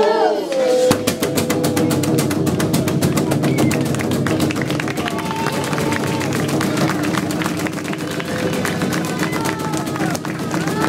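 Group singing breaks off about a second in, and fast, even rhythmic percussion takes over, many beats a second, over a held low vocal note with scattered voices.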